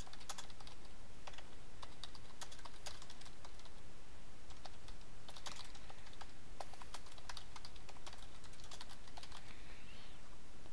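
Typing on a computer keyboard: irregular runs of keystrokes with short pauses between them, over a steady background hiss.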